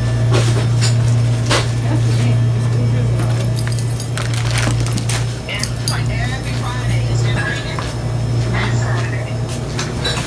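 Store ambience: a steady low hum under faint background music and distant voices, with scattered clicks and knocks of the phone being handled while walking.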